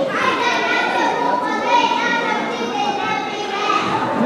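A group of young children's voices sounding together in unison, with drawn-out held tones.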